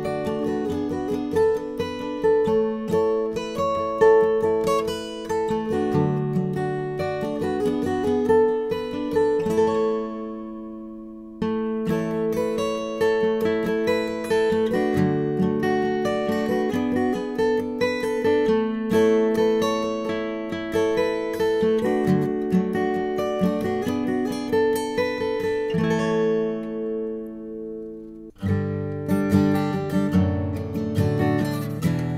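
A Gibson Custom Shop Historic 1936 Advanced Jumbo acoustic guitar with a thermo-aged Adirondack top plays a picked passage that rings out about ten seconds in. After a short gap, playing cuts in on a 2015 Gibson Custom Shop flame maple Advanced Jumbo with an Adirondack top. It rings out again near the end, then starts once more.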